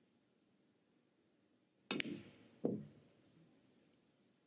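A snooker cue strikes the cue ball with a sharp click about two seconds in, and the cue ball hits the pink. About three-quarters of a second later a ball knocks against the table with a short ring. This is a pot on the pink played at too much pace, and it misses.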